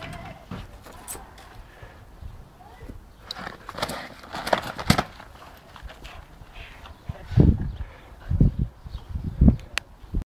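Handling noise from a hand-held camera as its holder moves about on a lawn. Scattered rustles and clicks come first, then a sharp knock about halfway through, then three dull thumps about a second apart near the end.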